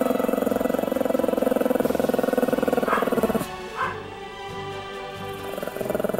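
A Pomeranian growling: one long steady growl, a break of about two seconds, then growling again near the end.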